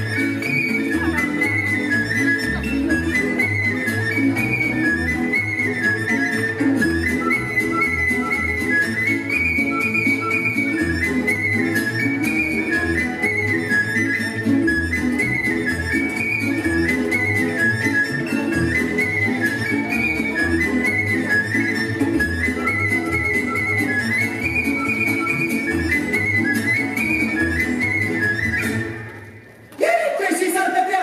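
Romanian folk dance music, a high, whistle-like melody repeating its phrase over a steady beat. It stops about a second and a half before the end.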